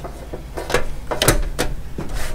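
Handling noise from the plastic charger and its power cord: three or four short knocks and clicks, the loudest a dull thump a little past the middle.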